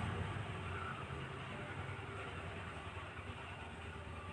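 A steady low background rumble with a hum in it, like a running motor, fading slightly across the few seconds.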